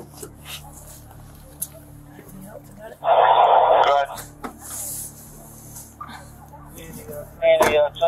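Police portable radio: a loud burst of static about a second long a few seconds in, then another short, loud radio burst near the end.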